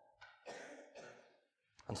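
A man's faint breathing: a sigh-like breath about a quarter second in, then a shorter breath about a second in.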